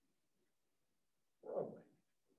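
Near silence, then one short, soft vocal noise from the lecturer about a second and a half in, lasting about half a second.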